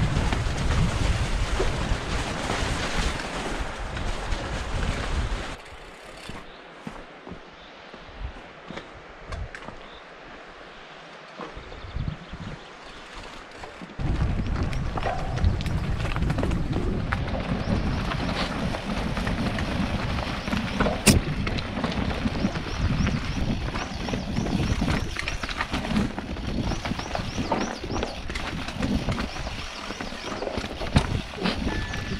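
Mountain bike riding down a rocky singletrack: wind buffeting the camera microphone and tyres rolling over dirt and stones, with knocks and rattles from the bike. It drops quieter from about six seconds in and comes back louder and rougher at about fourteen seconds.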